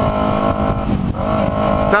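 Kawasaki Ninja 250R parallel-twin engine running loudly at a steady cruising speed through an Atalla aftermarket exhaust. The exhaust has come out of place, so the bike sounds like a straight pipe and is far too loud.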